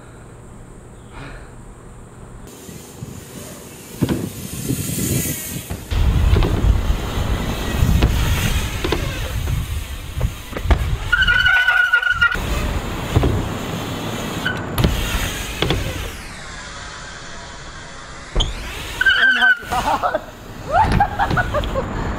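A BMX bike being ridden on wooden ramps: rough rolling rumble of the tyres on the ramp surface that builds over the first few seconds, with two short high squeals, one about halfway and one near the end.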